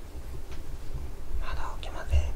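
A person whispering briefly, about one and a half seconds in, over a low steady rumble.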